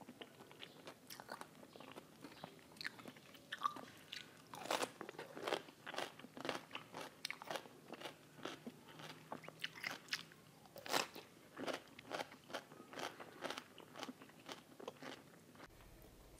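Close-miked crunching as a crisp cucumber spear is bitten and chewed: repeated short, crisp crunches, about two a second.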